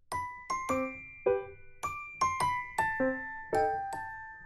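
Background music starts up: a melody of single struck notes, each ringing out, about three a second.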